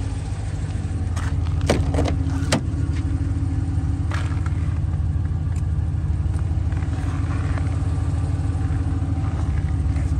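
Chrysler 300's engine idling steadily, with several short sharp clicks and knocks in the first few seconds and one more about four seconds in.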